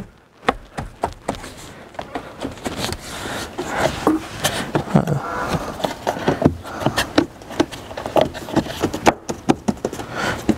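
Rubber door weatherstrip being pressed back onto the door-opening flange by hand: scattered taps, clicks and knocks with rubbing throughout.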